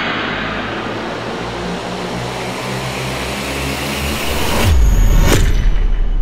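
Cinematic intro sound effect: a whoosh of noise rising in pitch for about four seconds. It ends in a deep boom with a sharp hit just after, as a title logo is revealed, over a low musical drone.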